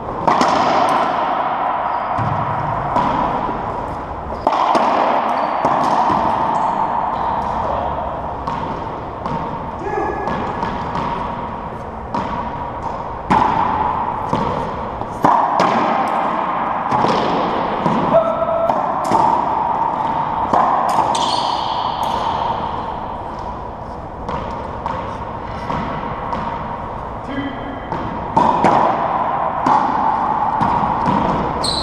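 Racquetball rally: a rubber ball struck by racquets and slamming off the walls and floor of an enclosed court, many sharp cracks in irregular succession, each ringing on in the court's echo.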